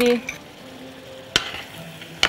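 Shrimp frying in a stainless steel pan with a faint, steady sizzle as sweet chili sauce is poured in. A metal spoon gives one sharp clink against the pan about a second and a half in.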